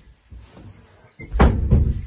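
Footsteps going down carpeted stairs, with one loud, deep thump about one and a half seconds in.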